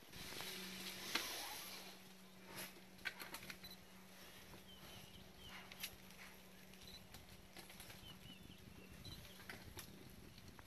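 An African elephant browsing on a tree: scattered snaps and rustles of twigs and leaves as it pulls at branches, the sharpest about a second in. A steady low hum runs underneath, and a few faint bird chirps come through in the second half.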